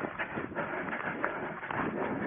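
A runner's footfalls in long grass, with the grass brushing against the legs, in an uneven rhythm of strides.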